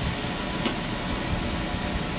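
Wild hog sausage patties sizzling in a hot cast-iron skillet, a steady hiss, with a faint click partway through.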